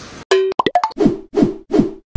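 Cartoon-style sound effects of an animated title card: a quick run of short pops, then three falling plops about half a second apart.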